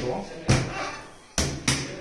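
PVC kitchen cabinet doors being pushed shut and knocking against the cabinet frame. There is one knock about half a second in, then two more in quick succession a little after halfway.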